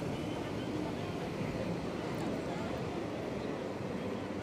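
Ocean surf breaking on a sandy beach: a low, steady rush of noise.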